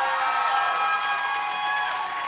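Live concert audience cheering and applauding at the end of a rock song, with a few held tones fading out under the crowd noise.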